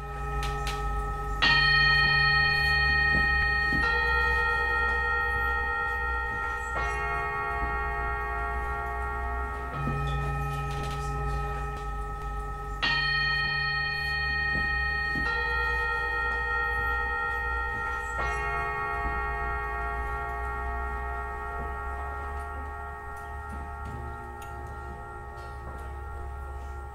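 Standing singing bowls struck one after another with a mallet, each ringing on long and overlapping the next, a different pitch with each strike. A phrase of about four strikes, a few seconds apart, is played and then repeated; the first strike, about a second and a half in, is the loudest.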